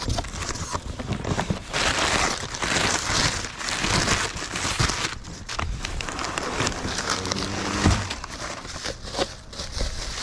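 Crumpled newspaper packing rustling and crinkling in a cardboard box as hands dig through it, with a sharp knock about eight seconds in.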